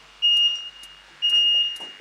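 Electronic interval timer beeping a countdown: two short, high, loud beeps one second apart, each fading quickly, leading into the start of the exercise interval.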